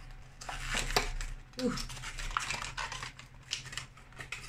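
Packaging of a brush-cleaning pad being handled and opened by hand: a run of light clicks, taps and rustles.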